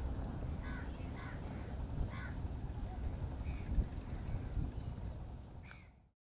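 Crows cawing several times at irregular intervals over a steady low rumble; the sound fades out at the very end.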